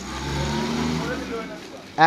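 Motor vehicle engine running as it passes, growing louder over the first second and then fading away.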